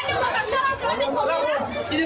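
Several people talking over one another, with one voice complaining about the food vendors.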